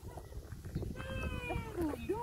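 A high, drawn-out, meow-like cry in the second half, sliding down in pitch near the end, over wind rumble on the microphone.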